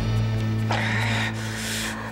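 Dramatic background score holding one low note steadily. Two short hissing noises sound over it, a little under a second in and again near the end.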